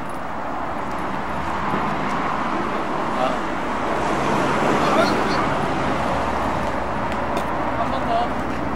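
Steady road traffic noise from a city street, with a few brief faint squeaks.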